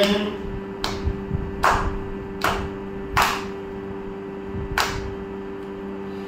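Hand claps keeping the beat of adi talam in Carnatic music, one strike about every 0.8 seconds with one beat skipped, over a steady drone.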